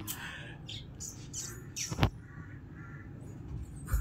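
Small handling noises as a slice of bread is moved about on a plate, with one sharp tap about two seconds in.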